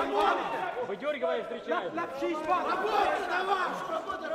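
Many men's voices shouting and calling over one another: the ringside crowd and cornermen at a bare-knuckle boxing match.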